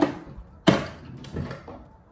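Handling noise from small hard objects being picked up or set down: a short knock at the start, a sharp, loud knock with a brief ring about two-thirds of a second in, and a softer knock just after a second.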